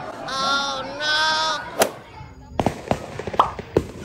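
Two short, wavering high cries, then a single sharp crack. From about halfway through comes a run of about ten sharp, irregular firework pops and bangs.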